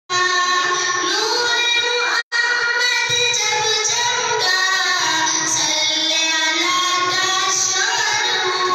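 A voice singing a naat, an Islamic devotional song, in long held melodic lines, with a sudden brief break about two seconds in.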